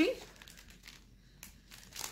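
Faint crinkling of the plastic packaging of Mill Hill cross-stitch kits being handled.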